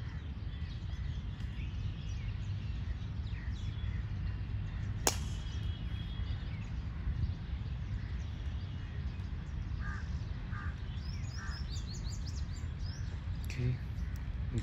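A single sharp crack of a golf drive off the tee, club striking ball, about five seconds in. A few short bird calls follow near the end, over a steady low background rumble.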